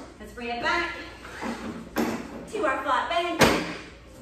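An adjustable step-platform workout bench being reset from incline to flat, its backrest giving two sharp knocks, the second and louder about three and a half seconds in. A voice carries on underneath.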